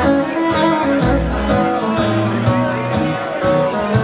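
Live country band playing an instrumental passage: electric and acoustic guitars over low bass notes, with a steady beat.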